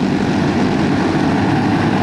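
A pack of racing karts with single-cylinder Briggs & Stratton flathead engines running together at speed, a steady, dense drone of many engines overlapping.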